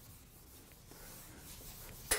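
Blackboard eraser rubbing across a chalkboard, a faint scratchy wiping that grows a little stronger about a second in.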